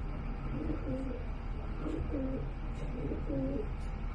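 A bird cooing: a series of low, rounded coos about once a second, over a steady low hum.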